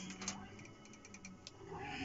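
Faint light clicks, several in quick succession about half a second to a second and a half in, over a low steady hum.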